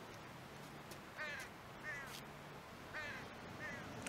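A bird calling faintly, four short calls in two pairs.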